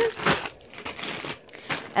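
Plastic candy bags crinkling as they are handled and shuffled, in irregular rustles with the loudest just after the start.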